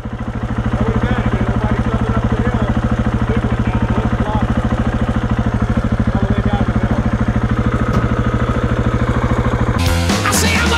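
KTM 690's single-cylinder engine idling steadily, an even rapid thumping pulse.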